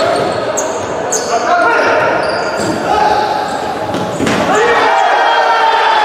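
Futsal play on a wooden hall floor: the ball knocked and bouncing, sneakers squeaking and players shouting, all echoing in the hall.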